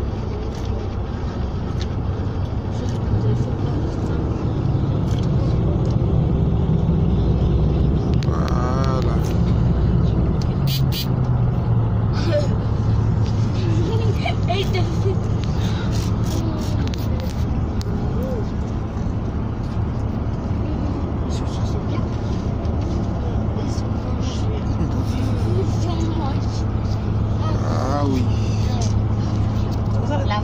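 Steady low road and engine rumble inside the cabin of a moving stretch limousine, with voices chattering now and then over it.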